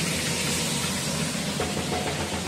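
Steady hiss of onions frying in an oiled pan on a gas stove, over a low, even hum.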